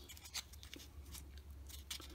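Faint, scattered light clicks and taps of a small laser-cut plywood model wheel being handled between the fingers, its parts and the aluminium hub tube knocking lightly.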